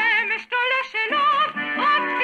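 Music: a Hebrew folk song, a melody sung with wide vibrato in short phrases over sustained accompaniment.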